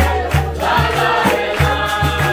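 Capoeira roda music: a group singing a chorus together over a standing atabaque drum, pandeiros and berimbaus, with hand clapping. The low drum strokes repeat steadily, about two or three a second.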